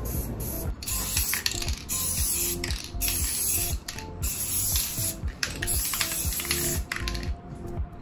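Aerosol can of fluorescent spray paint hissing in repeated bursts of about half a second to a second each, over background music.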